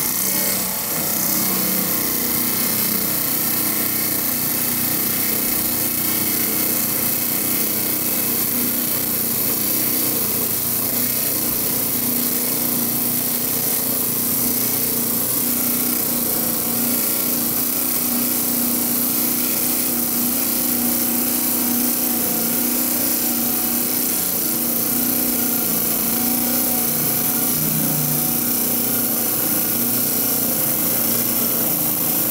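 Lortone TS-10 10-inch lapidary trim saw running steadily, its blade grinding through a large block of soft Brazilian serpentine, with a constant motor hum under the cutting noise.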